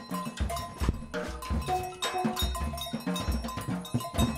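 Wooden xylophone and drum kit playing together live: mallet strikes on the wooden bars give short ringing pitched notes over kick-drum and tom hits in a steady rhythmic groove.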